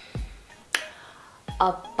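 A soft low thump, then a single sharp, snap-like click about three-quarters of a second in, over background music.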